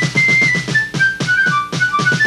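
Children's TV opening theme music: a high, whistle-like melody of short held notes over a quick, steady drum beat.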